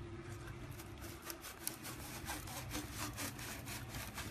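Plastic boiler flue terminal scraping and clicking in its wall sleeve as it is slid out by hand: a run of short, irregular rasping rubs over a steady low hum. The flue section is loose when it should be fixed in place.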